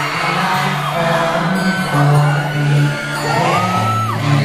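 Live pop band music in a concert hall, with held low notes, under high-pitched screaming from the crowd of fans.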